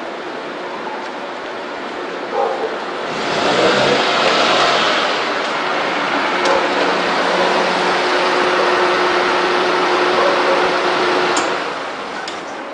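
Car engine running as the car pulls slowly out through a gateway, swelling about three seconds in and easing off near the end, with a sharp click shortly before it fades.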